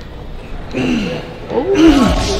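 Excited wordless exclamations from people reacting to the reveal of a car: a short cry about a second in, and a louder one near the end, with background music under them.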